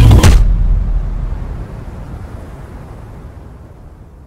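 A sharp hit as the music cuts off, then a low rumbling tail that fades out steadily over about three seconds.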